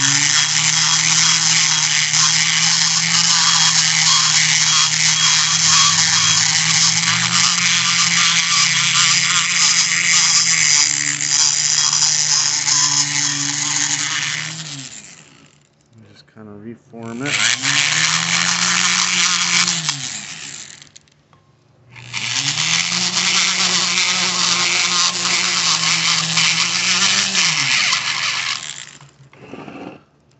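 Electric rotary grinder with a carbide burr cutting into the aluminium exhaust port of an F6A DOHC turbo cylinder head. It runs three times: one long run of about fifteen seconds, a short one of about three seconds, and one of about seven. Each time the motor's pitch rises as it spins up and drops as it winds down.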